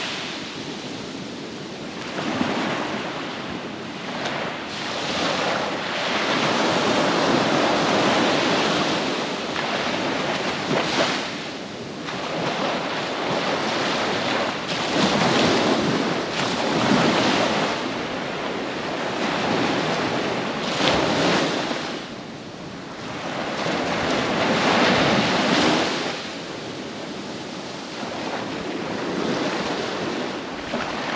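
Small surf breaking and washing up a sandy beach, the rush swelling and falling back every few seconds.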